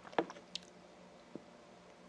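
A few short clicks and wet mouth sounds after a sip from a small glass. The glass is set down on the table, and the lips smack; the loudest click comes just after the start.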